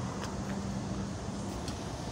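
Steady street traffic noise with a vehicle engine running nearby, a low even hum.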